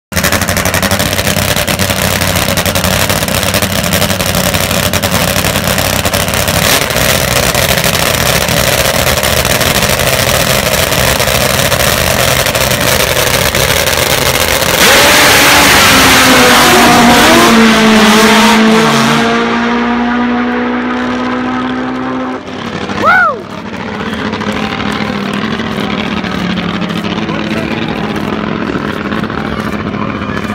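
Top Fuel drag motorcycles running at the start line, then launching at full throttle about halfway through: the loudest stretch, followed by the engine note falling in pitch and fading as the bikes run away down the track. A short, loud sound sweeping up and down in pitch comes just after the bikes fade.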